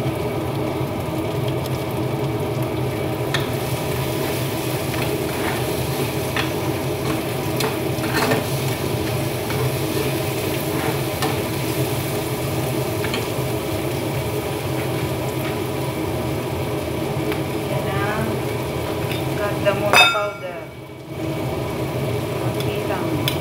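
Food frying in a pan on a gas stove while being stirred, with scattered taps and scrapes of the utensil against the pan over a steady sizzle. Near the end there is a louder knock, then the sound dips briefly.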